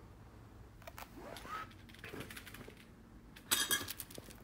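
Mostly quiet, with a few faint rising voice-like sounds in the background, then a short burst of rustling and clicking about three and a half seconds in as the replica title belt and its metal plates are handled.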